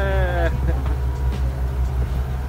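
Passenger boat's engine running with a steady low drone, with a voice saying "yeah" that ends about half a second in.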